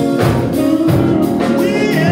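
A gospel praise song: women's voices singing together into microphones over guitar accompaniment with a steady beat.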